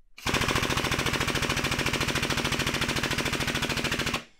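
Air-over-hydraulic pump of a Pittsburgh 8-ton long ram air/hydraulic jack running on shop air, a rapid, even chatter that starts just after the start and cuts off at the end. The ram does not extend: laid horizontally, the cylinder doesn't work.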